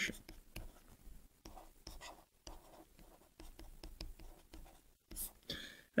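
Faint scratching and tapping of a stylus writing on a tablet screen, a run of short strokes as handwritten words are formed.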